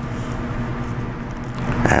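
Steady low hum with an even background hiss: the room's constant background noise.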